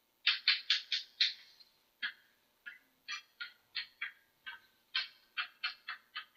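Chalk writing on a blackboard: quick runs of short scratching strokes, about twenty in all, with brief pauses between the runs.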